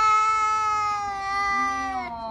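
A tabby cat meowing: one long, drawn-out meow held at a steady pitch.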